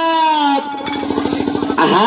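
A woman's voice singing a folk song through a microphone, holding a long note that dips slightly. About halfway through it breaks into a fast, even warbling trill of roughly a dozen pulses a second, then rises back into a held note near the end.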